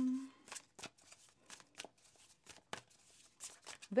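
A tarot deck being shuffled by hand: a string of short, irregular card snaps and rustles, roughly a dozen over a few seconds.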